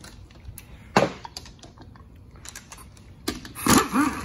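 Small clicks and taps of hands working the connectors and solenoids on a 4L60E automatic transmission's valve body, with one sharp knock about a second in and a louder metallic clatter near the end.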